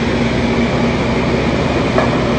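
Food truck kitchen machinery running: a loud, steady drone with a low hum through it.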